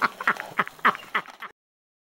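Laughter in a run of short bursts, each falling in pitch, that cuts off suddenly about one and a half seconds in.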